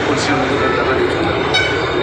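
A man's voice over loud, steady background noise. A sustained horn-like tone with several pitches comes in about one and a half seconds in.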